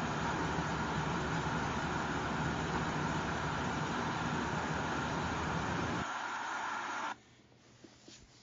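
Steady rushing, whooshing noise of a running motor-driven fan, with a faint steady hum in it, cutting off abruptly about seven seconds in.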